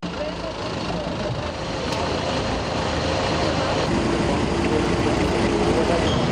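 Vehicle engines running steadily, with people talking in a crowd around them.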